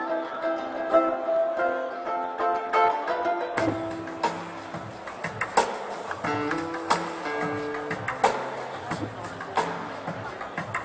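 Live band music heard through the PA from far back in an open-air crowd: a plucked banjolele plays a solo melody line. About three and a half seconds in, bass and drums come in under it.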